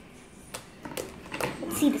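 Homemade slime being pulled and folded by hand, giving a handful of short, scattered clicks and pops.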